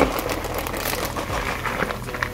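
Plastic salad-kit bag crinkling as shredded sweet kale salad is shaken out of it into a plastic bowl.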